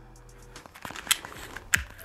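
A few sharp metallic clicks, the two clearest about a second in and near the end, from a SIG Sauer P365 pistol being handled and checked to show it is clear. Faint background music runs underneath.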